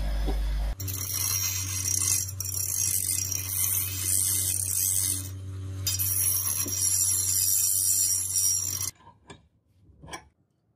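Bench grinder grinding a flat steel bar: a steady hiss of steel on the abrasive wheel over the motor's hum. The grinding eases for a moment about halfway, then resumes, and stops abruptly about a second before the end.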